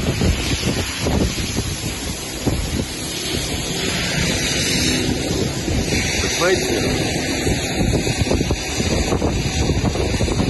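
Loud, steady rushing wind noise on an outdoor microphone, with indistinct speech over it.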